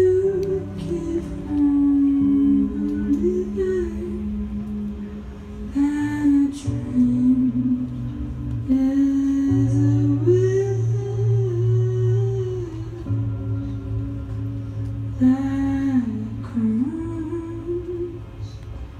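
Live band playing a slow song: a male voice sings a sliding melody over electric guitar and long held bass notes.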